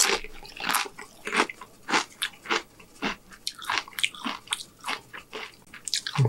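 Close-miked chewing of a salsa-dipped tortilla chip: irregular wet smacks and crunches, about three a second.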